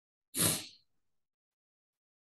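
A single short, noisy burst of breath from a person, lasting about half a second from just after the start.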